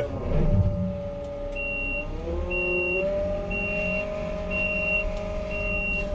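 Merlo 42.7 telehandler's diesel engine and hydrostatic drive running, heard from inside the cab; the engine note dips and then rises again about two to three seconds in. From about a second and a half in, a reversing alarm beeps steadily, about once a second.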